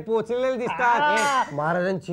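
A man's voice: short exclamations, then a long, loud, drawn-out cry about a second in whose pitch rises and then falls, followed by lower speech.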